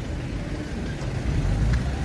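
Street traffic: a steady low rumble of car engines.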